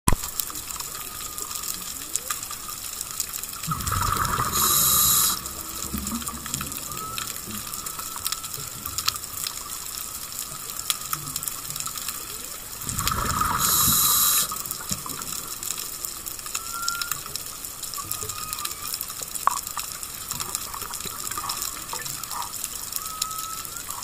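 Scuba diver breathing through a regulator underwater: two rushing bursts of exhaled bubbles about nine seconds apart. In between runs a steady crackle with scattered sharp clicks.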